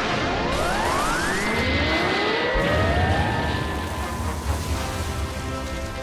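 Cartoon magic-effect sound with music: a loud rushing noise over a low rumble, with tones that glide upward over the first few seconds and then hold steady.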